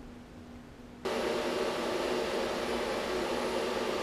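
Faint room tone for about a second. Then a steady rushing noise, like a running fan or blower, cuts in abruptly and holds at an even level.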